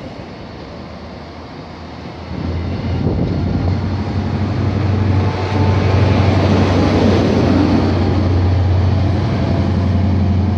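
Train noise at the platform: a GWR Intercity Express Train running past, then from about two seconds in a steady low diesel engine drone that grows louder as an HST's Class 43 power car approaches.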